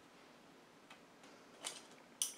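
Near silence with two faint, short clicks, about a second in and again near the end, from scissors being handled.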